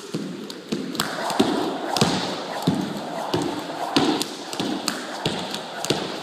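Jump rope doing double unders: sharp clicks of the rope ticking on a hard floor, each jump's landing a low thud, in an even rhythm of about three jumps every two seconds.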